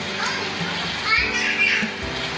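Children's high voices calling out and chattering, with a steady low hum underneath.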